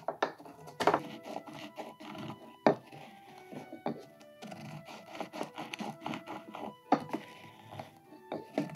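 Wooden pestle grinding and rubbing whole spices in a wooden mortar, with several sharp knocks of wood on wood, over background music of held notes.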